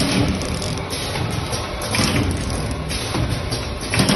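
Spice powder pouch packing machine running: a steady mechanical clatter with a few louder knocks.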